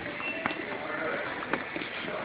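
Footsteps on a hard store floor, sharp clicks about every half second, over a steady din of shop background noise with a faint voice-like call.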